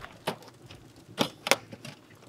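Several sharp clicks and knocks as a diamond-plate aluminium storage drawer is slid out of the back of a Jeep, the loudest about a second and a half in.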